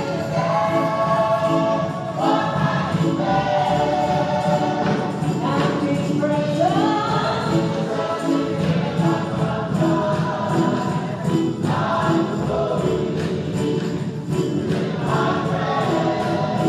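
Gospel music: a choir singing held, gliding notes over a steady beat.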